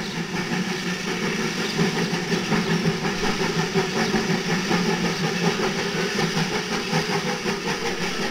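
A train running steadily, with a fast, fine, even clicking throughout.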